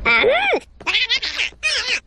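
A cartoon creature's high-pitched, warbling vocal chatter in three quick bursts: squeaky, rising and falling nonsense sounds rather than words.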